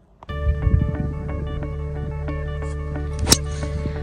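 Background music with a steady beat, over which a golf driver strikes a ball off the fairway once, about three seconds in, with a single sharp crack.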